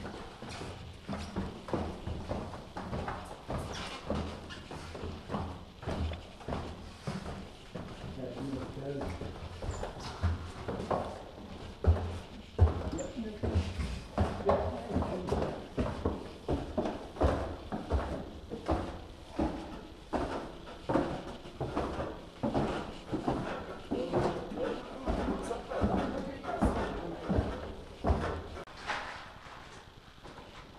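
Footsteps walking down a rock-cut tomb corridor, about two steps a second, with voices in the background.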